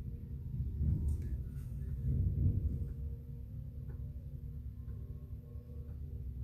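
Low, uneven rumble with a faint steady hum, and a few faint ticks: background room noise.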